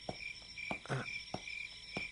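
Crickets chirping in a steady, pulsing trill, with a few soft clicks.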